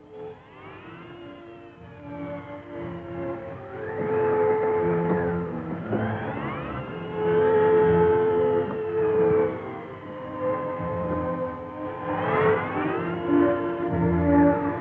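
Film-score music with held notes. Over it, gliding tones rise and fall in long sweeps, four times over.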